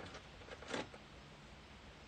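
Paper or cardstock being handled, with a faint rustle near the start and a louder brief rustle about three quarters of a second in, over quiet room tone.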